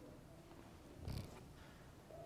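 Quiet church room tone with one brief, muffled thump about a second in.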